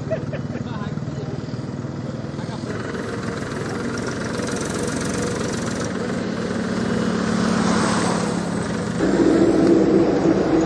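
A motor vehicle's engine running on the road, its drone growing louder over several seconds as it draws near, with a sudden change in the sound about nine seconds in.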